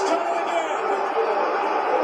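A televised football game playing in the room: steady stadium crowd noise under faint broadcast commentary.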